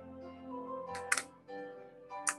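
Gentle piano background music, with two sharp metallic clinks close together about a second in as the coins land.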